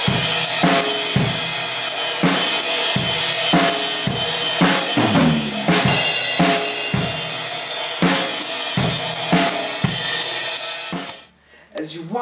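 Drum kit played in a steady beat: snare and bass drum hits under a continuous wash of cymbals and hi-hat, stopping about a second before the end.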